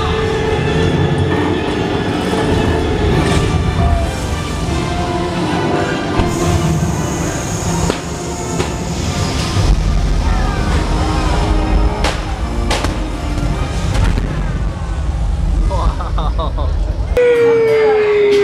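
Live stunt show sound: music and amplified voices over a motorboat engine. From about ten seconds in, a heavy low rumble with several sharp bangs as pyrotechnic fireballs go off over the water. The sound breaks off abruptly just before the end.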